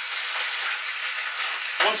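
Diced pork belly sizzling steadily as it fries in hot oil with onion, garlic and chilli in a shallow stainless-steel pot, stirred while the meat browns.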